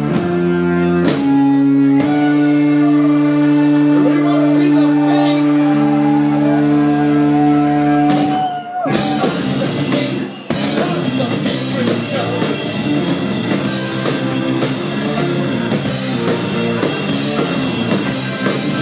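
Live rock instrumental on keyboards and drum kit: held keyboard chords with a note sliding above them for about the first eight seconds, a brief break, then the band comes back in with busier keyboard playing and drums.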